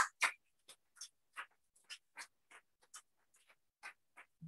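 Faint, scattered applause from an audience: separate short claps at about three or four a second with gaps between, chopped up by the video-call audio.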